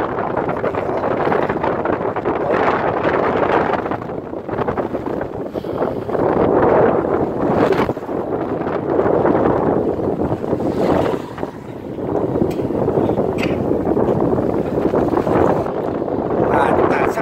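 Wind buffeting the microphone in a loud, steady rush that swells and eases, mixed with motorbikes running across the steel-plate deck of a suspension bridge, one passing close about halfway through. A few sharp clanks come in the second half.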